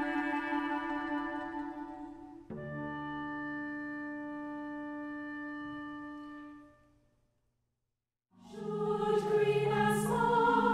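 Women's choir and instruments holding sustained chords, with an abrupt cut about two and a half seconds in to a new held chord that fades away. After a second of silence, the choir comes in singing near the end.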